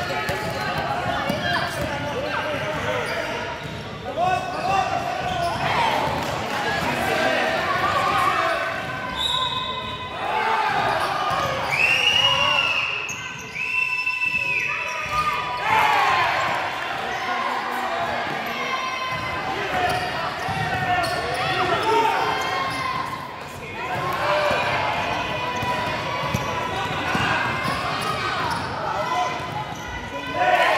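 A basketball being dribbled and bouncing on a sports hall floor, with indistinct voices and shouts echoing through the large hall. A few short high-pitched squeaks come around the middle.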